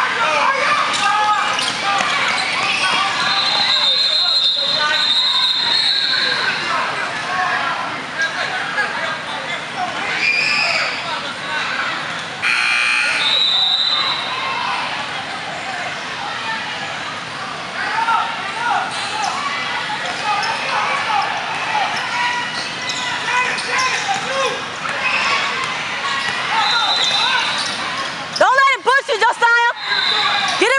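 Youth basketball game in a large indoor gym: a basketball dribbling on the court amid spectators and players talking and calling out, with short sneaker squeaks on the sport-court floor now and then. The sound gets louder and choppier near the end.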